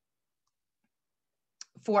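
Near silence for about a second and a half, then a single short click just before speech resumes.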